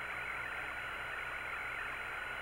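Steady hiss and low hum of the Apollo radio communications link between transmissions, with no other sound on it.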